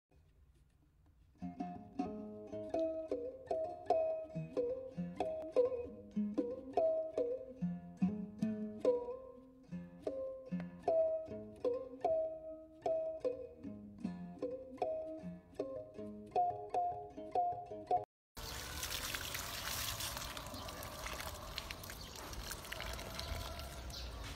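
Light instrumental intro music of short, plucked-sounding notes in a repeating rhythmic pattern, starting about a second and a half in and cutting off abruptly at about 18 s. After a brief gap comes a steady, even background noise from the outdoor scene.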